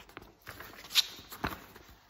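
Glossy magazine pages being turned and handled: a few short paper rustles and soft knocks, the loudest about a second in.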